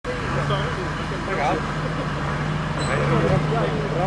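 A diesel engine running steadily at idle, a low even hum, with people talking over it.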